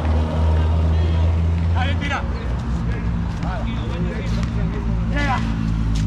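A motor engine running steadily as a low hum, its pitch shifting about two seconds in, with short shouts of voices over it now and then.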